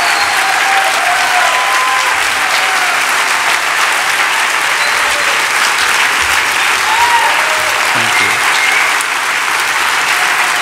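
A large audience applauding steadily, a dense sustained clatter of clapping, with a few voices calling out over it.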